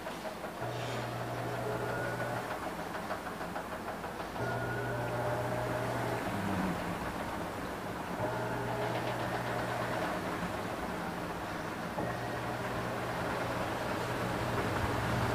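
Panasonic NA-F65S7 top-load automatic washing machine agitating its load: the motor hums in bursts of about two seconds with pauses of about two seconds between, four times over.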